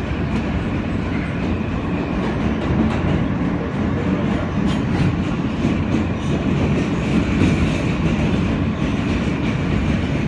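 R160B subway car heard from inside, running along the track: a steady, loud rumble of wheels on rail, with irregular clicks from rail joints.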